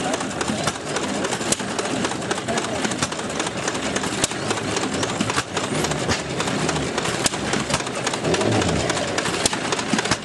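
Small antique stationary gas engine running a red pitcher pump, water gushing from the spout into a galvanized tub in a steady splash, with a sharp report from the engine every couple of seconds.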